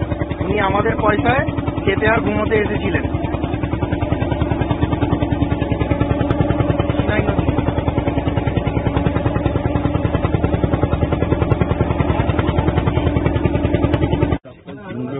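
A boat's engine running steadily with a rapid, even beat. Voices talk over it in the first few seconds.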